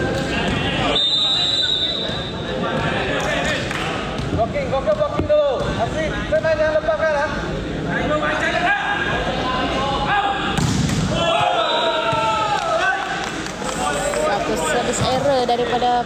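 Spectators talking and calling out, echoing in a large indoor sports hall, with a volleyball bouncing on the hard court floor.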